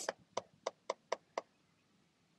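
Stylus tip tapping and clicking on a tablet's glass screen while handwriting: about six short clicks in the first second and a half, roughly four a second.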